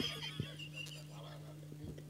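A person's high-pitched, wavering laugh into a microphone, trailing off under a second in, over a steady low electrical hum.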